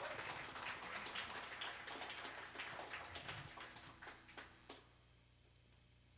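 Audience applauding, the clapping thinning out and dying away about five seconds in.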